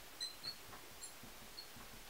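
Faint, short, high squeaks of a marker tip writing on a glass lightboard, a few scattered strokes over a low hiss.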